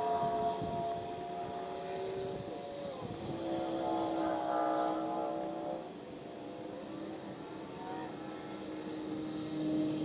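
An engine humming steadily, its pitch shifting a few times, with a fuller, louder stretch about four seconds in.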